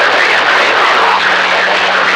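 CB radio receiver on the 11-metre band hissing with loud, steady static from distant skip, weak garbled voices buried in the noise, over a faint low hum.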